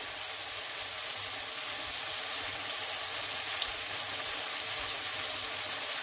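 Oyster mushrooms in oyster sauce sizzling in a frying pan, a steady hiss with a faint low hum underneath.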